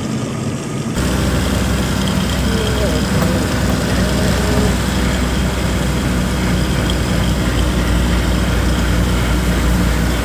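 Steady engine and road noise of a truck on the move, heard from inside the vehicle. About a second in it changes to a louder sound with a deep, steady low hum.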